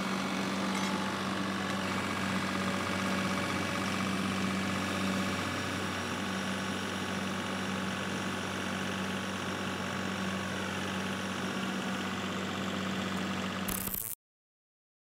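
Steady mechanical hum of slab-lifting machinery running: a low, even drone with one constant tone. It ends with a brief burst right at the end, then cuts off suddenly.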